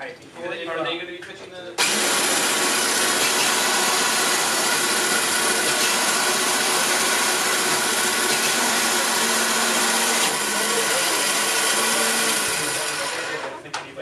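Electric motors of a wheeled shooter prototype, geared 5:1, spinning its wheels: a loud steady whir that starts suddenly about two seconds in, runs evenly for about ten seconds, then winds down and fades near the end.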